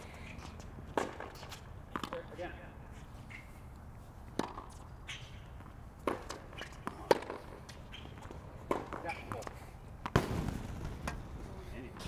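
Tennis rackets striking the ball back and forth in a rally: sharp pops every second or two, with the ball's bounces and shoe scuffs on the hard court between them.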